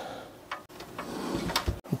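Handling noise from a Corsair 275R Airflow PC case being shifted by hand on a bench: faint rubbing and light clicks, one about a quarter of the way in and a sharper one near the end.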